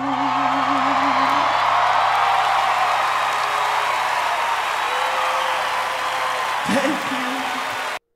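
A man's held sung note with vibrato ends about a second and a half in, under a studio audience cheering and applauding loudly. A brief shout rises out of the crowd near the end, and all sound cuts off suddenly as playback stops.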